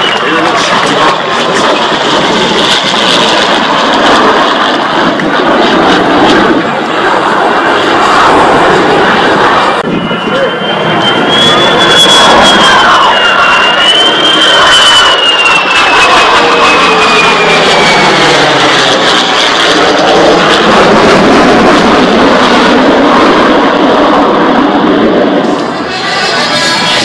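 F-35A Lightning II's single F135 turbofan roaring as the jet makes a low pass overhead. The sound swells and stays loud through the second half. A high whine rises and then falls in pitch as the jet goes by.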